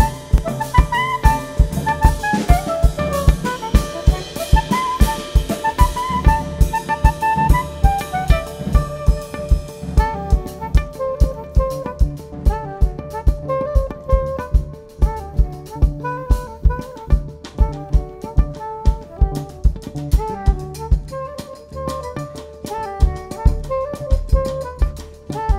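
A small instrumental jazz band playing live: a saxophone melody with electric guitars over a drum kit keeping a steady beat. The high cymbal wash thins out about ten seconds in.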